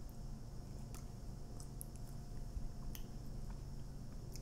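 A person chewing a bite of chocolate candy, faint soft mouth clicks over a low steady room hum.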